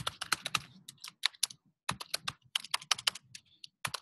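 Typing on a computer keyboard: quick keystrokes in short runs with brief pauses between them.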